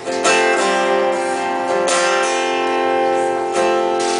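Acoustic guitar strummed: three chords about a second and a half apart, each left to ring.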